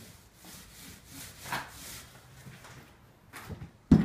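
Paint roller on an extension pole rolling wet paint up and down a textured wall, a series of soft rasping strokes under pressure. A sharp knock comes just before the end.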